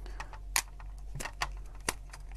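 A few light clicks and taps as a plastic ping-pong ball and a small USB LED light are handled and fitted together, over a steady low hum.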